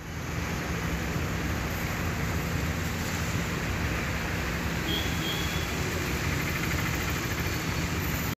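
Steady road-traffic noise from cars, lorries and two-wheelers moving slowly over a rain-soaked road.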